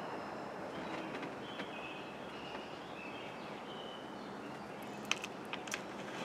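Quiet outdoor ambience: a steady background hiss with a few short, high bird chirps. Near the end come a few light clicks as a deck of cards is handled on a table.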